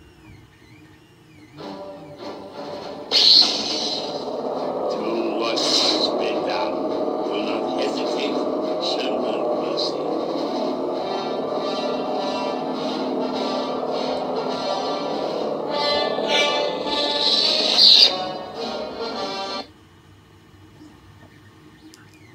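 Proffieboard lightsaber sound board playing through the hilt's 28 mm bass speaker: the blade ignites about three seconds in and hums steadily. It retracts with a loud flare near 18 seconds and cuts out a little after.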